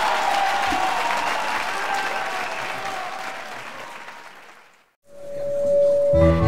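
Concert audience applauding, dying away about four and a half seconds in. After a moment of silence a single held note starts near the end, the first note of the next piece.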